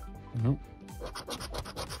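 A coin scratching the latex coating off a scratch-off lottery ticket: a quick run of rasping strokes in the second half, uncovering the next numbers.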